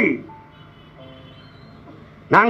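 A man's speech through a microphone breaks off just after the start, leaving a pause with a few faint, sparse musical notes at different pitches until speech resumes just after the end.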